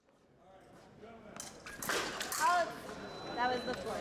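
Voices in a large hall, with a few sharp clicks or clacks among them, fading in over the first two seconds.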